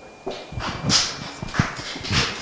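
Scattered applause from a small audience: separate, irregular claps that start a moment in and keep going.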